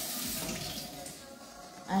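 Kitchen tap running into a sink, a steady hiss of water that fades out about a second in.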